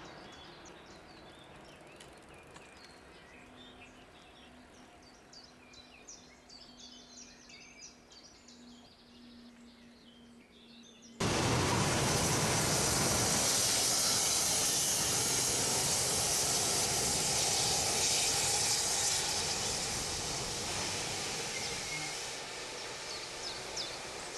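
For the first eleven seconds there is quiet outdoor ambience with bird chirps and a faint steady hum. Then the sound jumps suddenly to a loud, even rushing noise from an approaching V 100-type diesel-hydraulic locomotive working under power, which eases slightly near the end.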